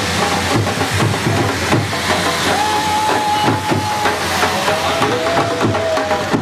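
Steady loud hissing and crackling of handheld sparkler fireworks throwing sparks, with voices calling out over it.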